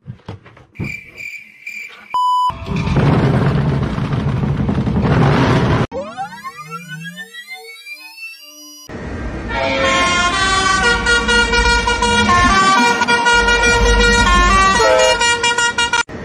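A short beep, then about three seconds of loud rushing noise, then a rising electronic sweep. After that, a diesel locomotive's air horn sounds a loud chord of several tones for about six seconds, its pitch dropping near the end as the locomotive passes.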